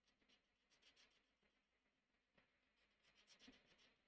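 Faint scratching of a marker nib stroked quickly back and forth on sketchbook paper while colouring in. There are two flurries, one around the first second and a louder one near the end.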